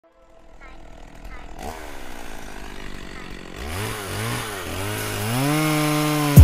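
Intro of a hip hop track: a noise swell rising out of silence. A buzzy, motor-like tone then bends up and down in pitch several times before settling into a steady note near the end.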